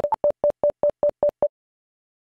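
A string of short electronic beeps at one steady pitch, about five a second, with a couple of higher beeps near the start, stopping about one and a half seconds in: a logo-card sound effect.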